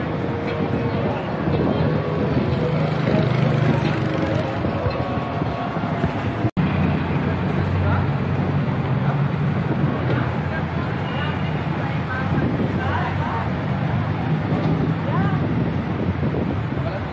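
Busy street ambience: a steady low rumble of traffic and engines, voices of people around, and wind on the microphone, with a split-second dropout about six and a half seconds in.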